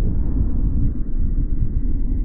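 Wind rushing over a GoPro's microphone, slowed down with slow-motion footage into a deep, steady rumble with no high end.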